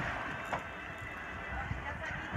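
Wind buffeting a phone's microphone on a sailing yacht at sea: a steady rushing noise.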